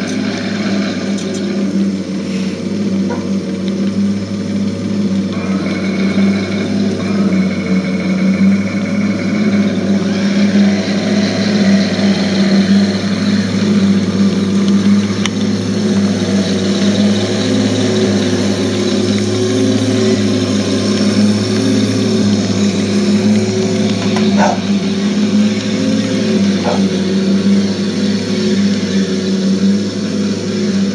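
Radio-controlled King Tiger tank model's sound unit playing a steady, simulated tank-engine rumble while the model drives, its swells matched by the proportional smoke unit's exhaust puffs.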